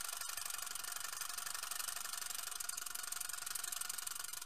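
A steady hiss with a fast, fine crackle running through it, like an old-film projector or crackle sound effect.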